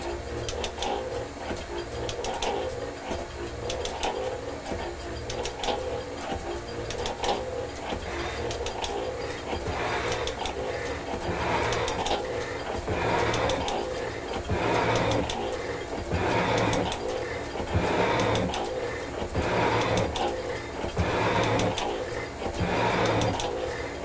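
Metal shaper running, its ram stroking back and forth as the tool bit takes a 0.050 in deep cut across a cast iron block, fed about 0.010 in per stroke. About ten seconds in the cut gets louder, with a scraping stroke about every one and a half seconds. The shaper is running with little strain on the ram.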